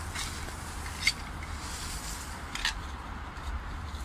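Rustling and scraping of straw, egg cartons and compost being dug into by hand, with a couple of sharp crackles, one about a second in and one later, over a low steady rumble.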